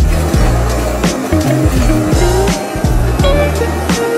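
Background music with a bass line and sliding guitar-like notes, over a steady rushing hiss of a kitchen blowtorch flaming salmon sushi. The hiss starts with the window and lasts throughout it.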